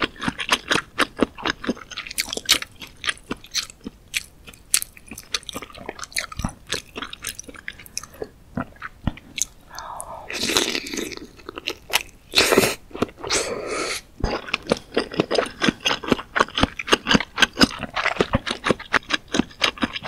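Close-miked chewing of soft, broth-soaked spicy fish cake: a steady run of short, wet mouth clicks. About ten seconds in, and again shortly after, there are longer, noisier stretches as a piece of fish cake is bitten off the skewer.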